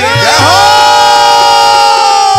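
A loud held chord of several steady, horn-like tones that slide down in pitch as they come in and again as they fade, while the rhythmic drum beat drops out.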